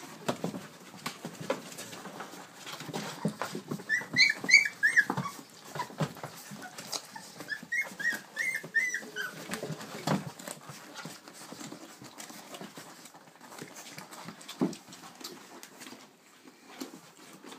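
Three-week-old American bully puppies squealing in two quick runs of short, high squeaks, about five and then about six. Scuffling and rustling run throughout as the litter clambers about.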